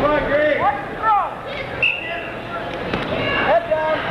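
Spectators and coaches shouting short calls across a reverberant school gym at a wrestling bout, with a couple of sharp thumps about two and three seconds in, as the wrestlers go down to the mat.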